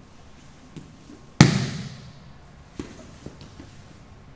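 A loud slap of a grappler's body hitting the vinyl training mat, about a second and a half in, ringing briefly in the room. A couple of lighter knocks against the mat follow.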